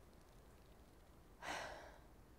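A person's single breathy sigh about one and a half seconds in, over otherwise near-silent room tone.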